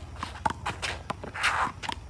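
Sneakers stepping and scuffing quickly on a hard handball court as players move during a rally, with a few short sharp knocks and a longer scuff about one and a half seconds in.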